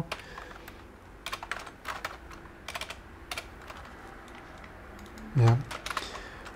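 Keystrokes on a computer keyboard: short bursts of typing, several clicks at a time, as terminal commands are entered.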